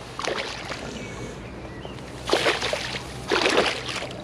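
A small jack pike thrashing at the surface at the bank's edge: a short splash early, then two louder splashes about a second apart near the end.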